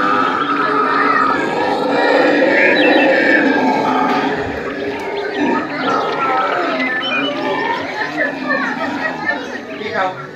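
Black howler monkeys howling: a loud, sustained chorus of roaring calls, strongest over the first four seconds and easing after that, with people's voices mixed in.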